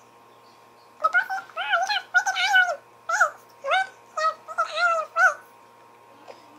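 A series of about eight short, high-pitched wordless cries, each rising and falling in pitch, coming in quick succession from about a second in.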